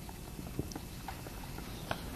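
Marker writing on a whiteboard: faint scattered taps and short strokes against quiet room tone, with one slightly louder stroke near the end.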